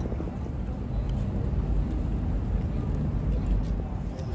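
Steady low rumble of outdoor city ambience, with no distinct events.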